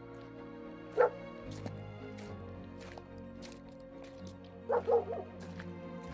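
A dog barks once, sharply, about a second in, then gives a quick run of about three barks near the end, over steady background music.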